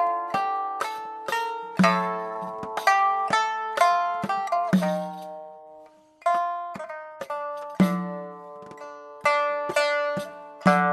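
Chinese pipa playing a melody of plucked notes, each struck sharply and ringing away, with an accented low note about every three seconds. The playing thins to a brief lull about six seconds in, then picks up again.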